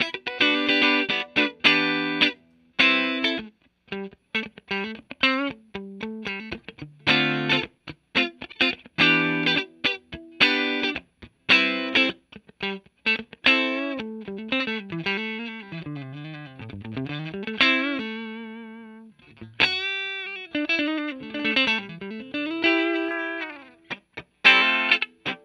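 Fender Player Plus Telecaster electric guitar played with a clean tone through effects: short, choppy chord stabs for the first half, then held single notes with string bends and vibrato from about halfway through.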